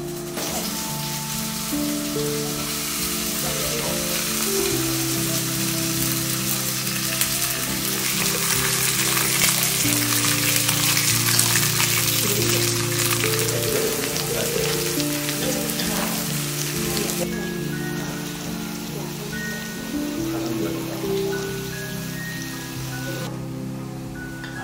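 Thin slices of marbled beef sizzling in a hot pan, a steady hiss that grows to its loudest around the middle and falls away about two-thirds of the way through, under background music.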